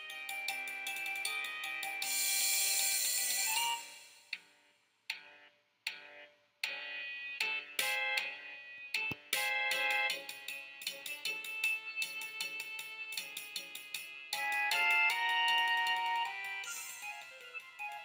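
Marching band show music: sustained chords that thin out about four seconds in to a few sparse, separate notes, then build back to full chords about seven seconds in.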